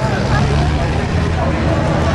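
A field of racing car engines running together across the track, a steady low drone, with spectators talking close by.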